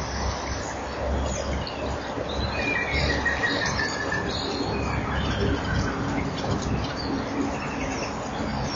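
Small birds chirping, with a short trill about three seconds in, over steady hiss and a low hum.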